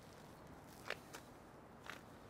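Near silence with a few soft footsteps on paving slabs, one about a second in and another near the end.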